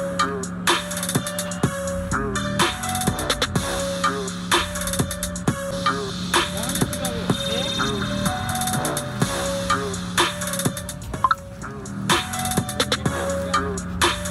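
Hip-hop dance beat: drum-machine kicks and snares in a steady rhythm over a bass line, with a voice in the mix.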